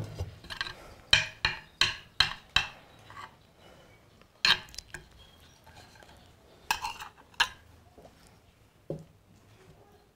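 Metal spoon clinking and scraping against a glazed clay dish while rice is served: a quick run of five taps about a second in, then a few scattered clinks.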